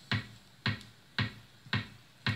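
Opening beat of a song played through a Bosch Los Angeles car radio-cassette player: a sharp snap-like beat with a low thump, repeating evenly about twice a second.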